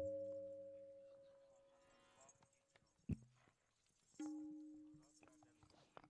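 A qawwali's last held harmonium note fading out over about a second and a half after the music stops. Then near silence, broken by a soft knock about three seconds in and a second short note a second later that dies away.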